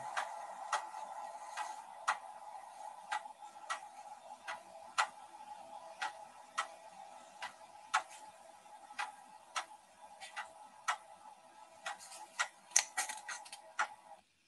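Tabletop water-fed seesaw oscillator (a 'mechanical neuron') running, heard from its demonstration video: irregular sharp clicks and ticks, about one or two a second, over a steady hum. The clicks bunch into a quick run near the end.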